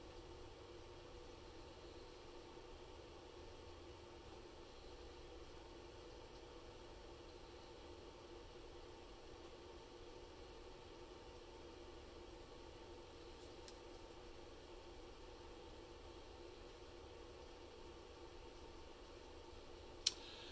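Near silence: a faint steady hum from the Breville air fryer oven running as it cooks.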